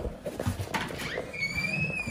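Scattered light knocks and steps, then a high squeak that starts about two-thirds of the way in, rises slightly and falls, lasting about a second.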